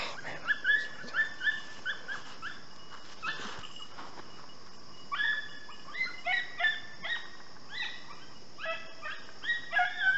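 Beagle hounds yipping in short, high yelps while trailing a rabbit's scent. A run of yelps comes in the first two seconds, then a faster flurry through the second half. Crickets trill steadily behind.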